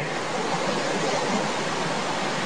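Steady, even hiss of the recording's background noise, with no distinct events.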